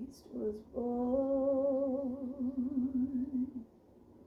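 Woman's unaccompanied voice: a short sung phrase, then one long held closing note with vibrato that stops about three and a half seconds in.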